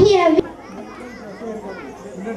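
A girl's voice over a microphone cuts off suddenly less than half a second in, leaving the chatter of many children.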